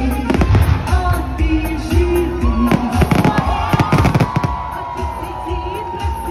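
Fireworks bursting, with a dense run of bangs and crackles about three to four and a half seconds in, over loud music with a melody.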